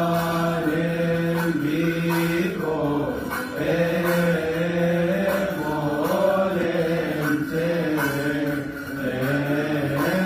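Coptic Orthodox liturgical chanting: a melodic vocal line that bends and steps between notes over a steady, held low tone.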